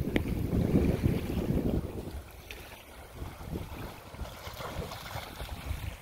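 Wind rumbling on the microphone over small waves lapping at a lakeshore, loudest for the first two seconds and then easing to a lower, steady wash.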